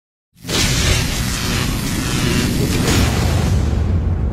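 Logo-reveal sound effect: after a moment of silence, a loud whoosh and deep rumbling boom begin about a third of a second in and hold steady, with a few brief swishes on top.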